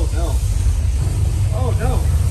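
Deep, steady rumble from the tour's earthquake-effects set, heard from a tram, with brief voices from riders at the start and again near the end.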